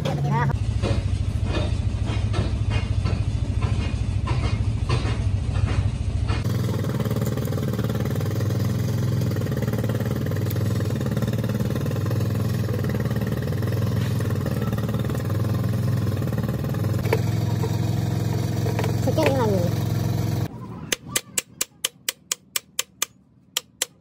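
A steady low mechanical hum with voices in the background. Near the end it cuts off, and a quick run of about a dozen sharp metal taps follows, roughly four a second, as a tool is struck against a differential's pinion housing.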